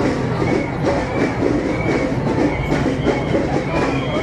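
A steady mixed din of a large roadside crowd and slow-moving vehicles.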